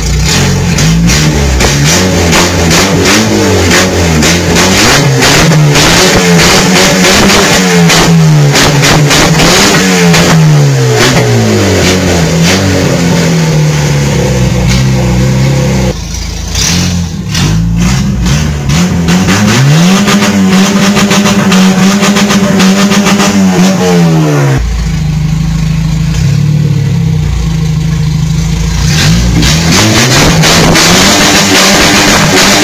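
Skoda Felicia 1.3 MPI four-cylinder petrol engine being revved over and over, its pitch rising and falling with each rev. About halfway through it comes back on, climbs and holds high revs for a few seconds, then drops sharply to a steady idle.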